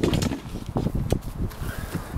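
Handling noise from a Grizzly 16-quart hard plastic cooler being gripped by its handle and shifted: irregular small knocks and rubbing over a low rumble.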